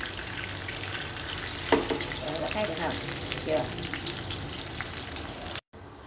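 Hot oil sizzling and crackling in a frying pan under pan-fried snakehead fish pieces, with a sharper click about two seconds in. The sound cuts out abruptly just before the end.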